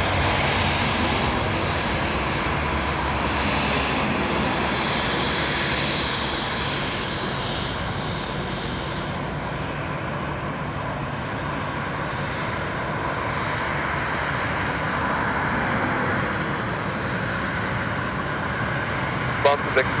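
Twin turbofan engines of an Embraer E190 regional jet running at low power as it taxis past: a steady jet rush with a faint high whine.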